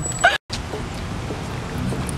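A man's voice breaks off at a sharp edit, followed by steady outdoor background noise, an even hiss and rumble with no clear single source.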